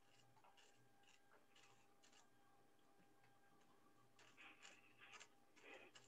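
Near silence: faint room tone with scattered soft clicks and rustles, a few slightly louder rustles near the end.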